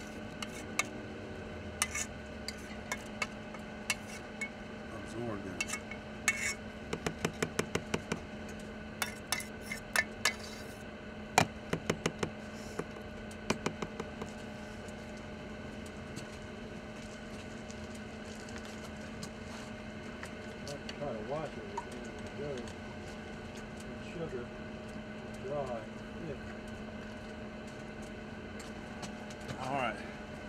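Metal clinks and knocks from a stainless saucepan being handled after pouring out barbecue sauce, in quick runs of sharp taps over the first half, over a steady low hum.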